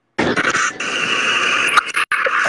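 A sudden, loud, harsh burst of hissing, screechy noise from the live-stream audio feed as a caller's connection comes through. It lasts about a second and a half and ends with a click and a brief cut-out.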